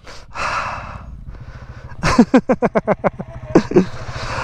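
A man breathing hard from exertion: a long, sighing exhale, then from about halfway through a run of quick, voiced panting breaths.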